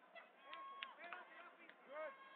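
Faint sports-hall ambience of distant voices, with a few short sharp sounds from the mat area about half a second and a second in.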